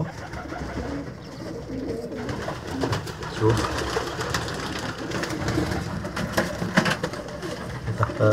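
Domestic pigeon cooing on its nest, with light rustling of the straw nest material.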